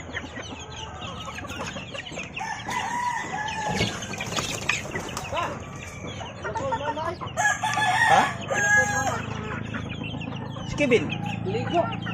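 A flock of young gamefowl chickens, one to three months old, cheeping and clucking as they peck around. Longer calls, from roosters crowing, come about three seconds in and again around eight seconds. A low steady hum runs underneath in the second half.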